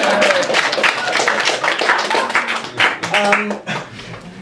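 A small audience laughing and clapping, the applause thinning out and fading away toward the end.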